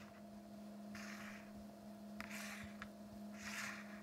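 Faint soft scrapes of game pieces being slid and set down on a game board, three times, with a light click or two, over a steady low electrical hum.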